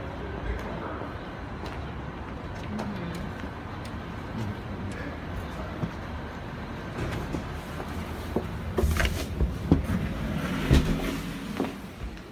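Steady traffic-like background noise with scattered clicks and knocks. About nine seconds in come louder bumps and brief voices.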